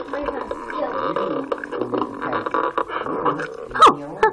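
Cartoon dialogue audio playing in the room: voices making wordless vocal sounds, ending in a loud, sharp swooping squeal just before the end.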